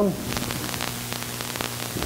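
Steady electrical mains hum and hiss on the recording, with a run of faint crackling clicks through the middle.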